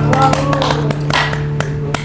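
Acoustic guitar strings left ringing in a pause between strummed song passages, with a few scattered hand claps and brief voices.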